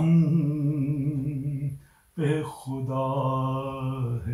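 A man singing an Urdu nazm unaccompanied, drawing out long wavering notes, with a short breath pause about two seconds in.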